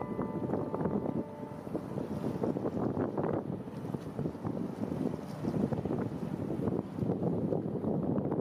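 Wind buffeting the microphone over waterfront ambience: a dense, uneven rustling rumble with frequent small crackles.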